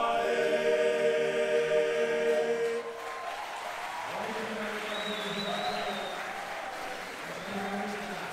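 A boys' choir sings, holding a long final chord that stops about three seconds in. Quieter applause with some voices follows.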